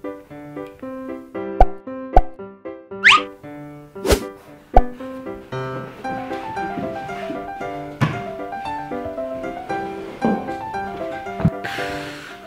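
Light background music with sharp wooden knocks as chess pieces are set down on a wooden board, about six of them spread through the passage. A quick rising whistle-like glide comes about three seconds in.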